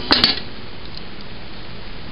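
Two sharp metallic clicks just after the start as a metal pot lid is set down against the cookware, followed by steady background hiss.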